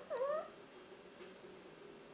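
A domestic cat meowing once: a short call that dips and then rises in pitch, right at the start, followed by quiet room tone.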